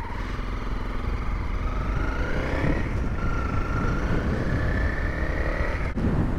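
Honda CRF250L's single-cylinder engine pulling as the motorcycle rides. Its pitch rises, drops at a gear change about three seconds in, then rises again.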